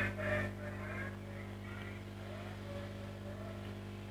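A steady low hum with faint hiss, the constant background noise of the recording, unchanging throughout.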